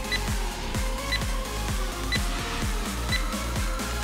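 Background electronic music with a steady beat, over four short high beeps one second apart from a countdown timer ticking down the last seconds of a rest break.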